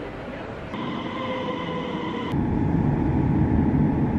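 Electric train at an underground station platform: a steady motor whine comes in about a second in and drops to a lower pitch halfway through, over a wheel rumble that grows steadily louder.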